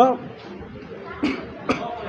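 A young man's voice says one word and then pauses; in the pause come two short breathy bursts, the first a little over a second in and the second near the end.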